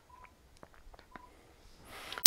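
Two faint, short electronic beeps about a second apart, each a single steady tone, with a few faint clicks between them.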